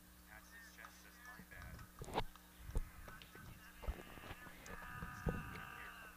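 Open-air ballpark ambience: distant voices of players and spectators, a few sharp pops, and a drawn-out call held for over a second near the end.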